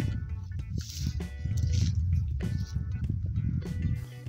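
Background music with steady held notes over a low rumbling noise.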